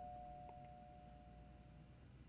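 Near silence on the film's soundtrack, with a faint, steady single held tone fading out and one faint tick about half a second in.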